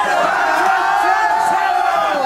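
Battle rap crowd shouting one long held cry of reaction, which falls in pitch and fades near the end.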